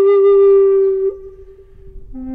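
Solo flute music holding one long note, which stops about a second in and leaves a quiet pause.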